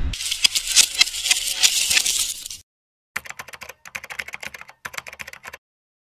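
Rapid clicking like keys typed on a keyboard, a sound effect for a logo card whose text appears as if typed. A dense run of clicks with a bright hiss lasts about two and a half seconds, then, after a short gap, come three shorter runs of separate clicks.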